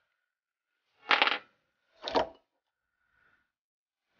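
Two short metallic clatters, about a second apart, from a Brembo brake caliper and hex key being handled in a bench vise as the caliper is unbolted.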